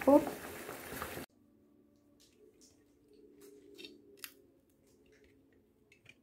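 Mostly near silence: a faint low hum with a few light clicks and taps, after a short low hiss that cuts off abruptly about a second in.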